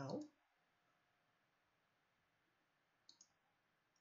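Near silence broken about three seconds in by a quick pair of soft computer-mouse clicks.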